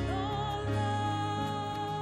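A hymn sung by a single voice with vibrato over sustained organ chords, the bass and chord notes held and changing in steps.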